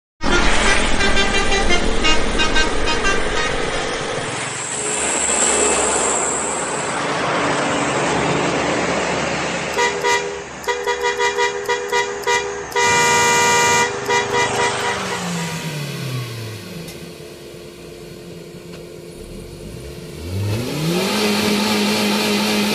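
Trucks passing on a highway, sounding their horns: a quick string of short toots, then one longer blast, over the noise of heavy engines going by. Near the end an engine revs up and holds.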